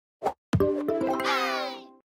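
Short cartoon intro jingle: a brief pop, then a held musical chord with a gliding, bending sound effect sweeping over it, fading out near the end.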